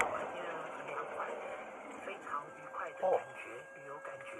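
People talking, sounding muffled and distant like voices from a radio or television. A steady held tone comes in a little past halfway and continues.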